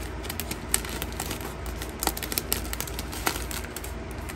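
Clear plastic packaging crinkling and rustling as it is handled, with irregular sharp clicks and crackles, the loudest about a second in and again a few times later.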